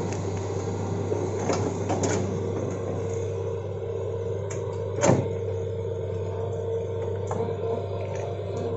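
Hitachi hydraulic excavator's diesel engine running with a steady hum while working, with several sharp cracks of branches and wood breaking as the bucket tears through brush and small trees, the loudest crack about five seconds in.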